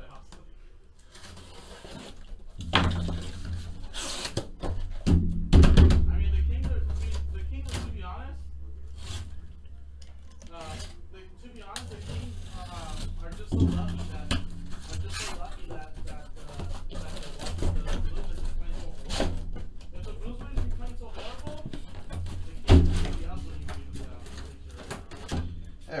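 A cardboard shipping case being turned over, opened and unpacked, with cardboard rubbing and scraping and a string of thunks as the sealed hobby boxes are slid out and set down. The loudest thunks come about 6 seconds in and again near the end.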